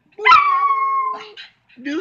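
A small wire-haired dog howling: one high howl held for about a second, starting abruptly and falling slightly in pitch.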